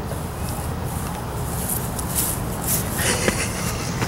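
Quick footsteps and rustling, growing louder over the last couple of seconds, over a steady low wind rumble on the microphone.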